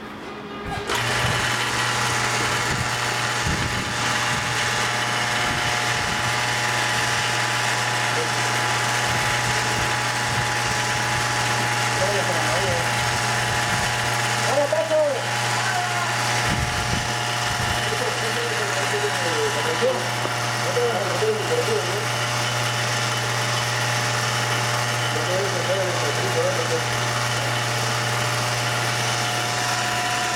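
Refinery process machinery starts about a second in and runs steadily: a loud, even hum with several steady higher whining tones over it.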